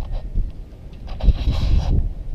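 Wind buffeting the camera microphone as a low rumble, with a brief hiss about a second in.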